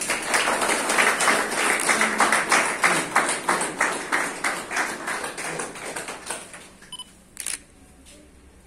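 A small group of people clapping, starting at once and dying away about six and a half seconds in, followed by a short noise near the end.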